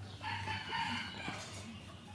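Newborn puppies crying: one long, high-pitched wavering cry of about a second and a half, starting just after the beginning, with fainter squeaks after it.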